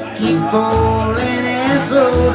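Live country band music: guitars picking a melody line with bending notes over a bass line.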